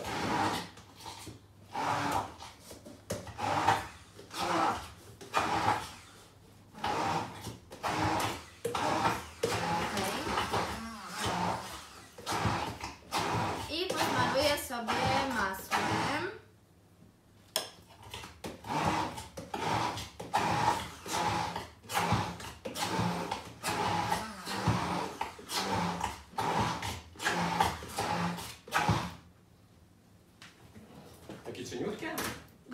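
Hand immersion blender puréeing cooked beetroot and millet in a tall cup, run in short repeated pulses with a brief stop a little past halfway.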